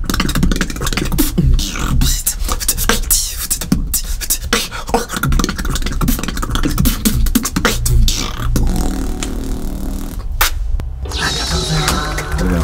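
Solo human beatbox in a bass-funk style: fast, dense kick, snare and hi-hat mouth sounds over a steady low vocal bass tone, with pitched vocal bass lines near the end and a brief break a little after ten seconds.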